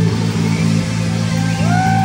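Live rock band playing, with electric guitar over a drum kit keeping a steady beat. Near the end a sustained note slides up and is held.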